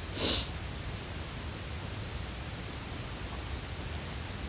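A single quick sniff just after the start, followed by the steady low hum and hiss of a small room picked up by a phone microphone.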